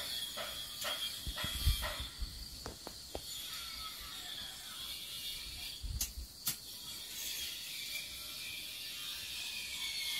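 Hand work on a small object: a run of short scraping strokes, about three a second, for the first two seconds, then a few scattered clicks and light knocks. Insects, likely crickets, drone steadily in the background.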